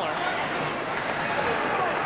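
Hockey arena crowd: many voices chattering together in a steady murmur during play.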